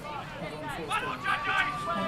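Indistinct chatter of spectators' voices at the pitchside. From about the middle, a steady high tone is held for just under a second.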